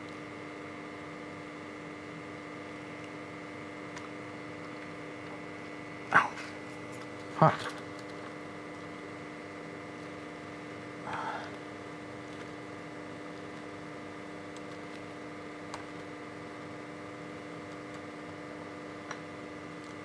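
Steady electrical hum made of several fixed tones. Two short, louder sounds break it about six and seven and a half seconds in, the second a man's short 'huh'.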